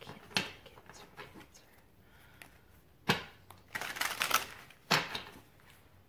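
A tarot deck being shuffled by hand: quick runs of sharp card clicks and slaps, the densest flurry about three to five seconds in, with quieter gaps between.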